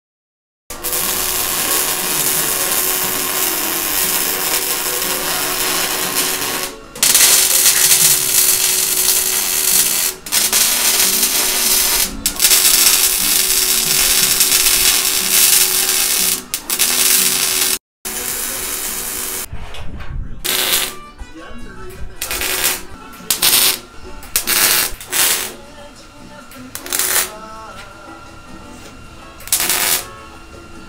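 MIG welding arc crackling and sizzling steadily, like bacon frying: the sound of a MIG machine whose voltage and wire speed are set correctly. Long continuous beads broken by brief pauses give way, later on, to a run of shorter welds with gaps between them.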